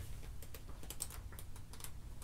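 Paper booklet pages being leafed through and handled: a string of light, irregular ticks and crackles.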